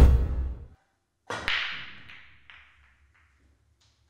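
A whoosh sound effect with a deep low end at the start. About a second later comes a pool break shot: a sharp crack as the cue ball drives into the racked pack, followed by the balls clattering and knocking apart, fading out over about a second and a half, with a few faint ball knocks near the end.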